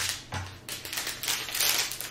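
Small plastic bags of diamond painting drills being handled and set down on paper: rapid crinkling of the thin plastic with the tiny resin drills rattling inside, denser in the second half, after two soft thumps near the start as a strip of bags is laid down.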